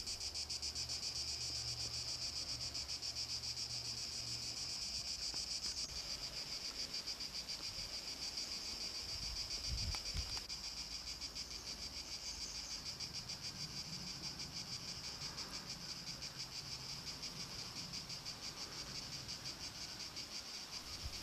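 Cicadas singing in a steady chorus, a high-pitched, rapidly pulsing drone.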